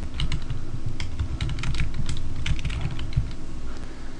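Typing on a computer keyboard: an irregular run of key clicks as a short line of text is entered.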